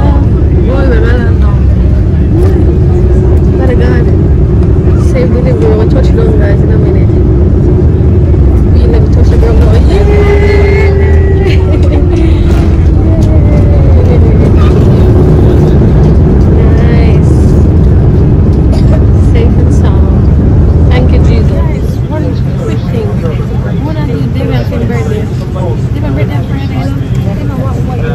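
Jet airliner landing, heard from a cabin seat by the wing: a loud, steady rumble of engines and runway noise, with a falling whine a little after ten seconds in. About twenty-two seconds in the sound drops to quieter cabin noise, with voices.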